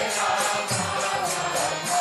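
Devotional kirtan: voices chanting a mantra to a melody, with small hand cymbals ringing a quick steady beat about four times a second.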